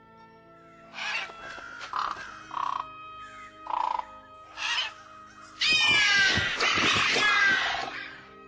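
Background music with a creature-call sound effect over it: five short, harsh calls, then a louder, longer call with falling pitch near the end.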